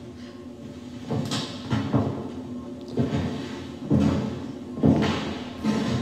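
A series of dull thumps, about one a second, inside an empty house, over quiet background music.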